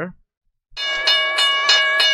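Cartoon railroad crossing bell ringing in quick, evenly repeated strikes, about three a second, starting under a second in.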